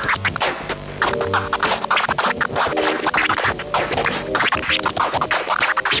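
Turntable scratching over music: a record pushed back and forth by hand under the stylus, cut into rapid short strokes with the mixer's fader.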